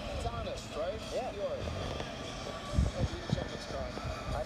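Boxing broadcast heard through a TV speaker and picked up by a phone: arena crowd noise with voices calling out, and two dull low thumps close together about three seconds in.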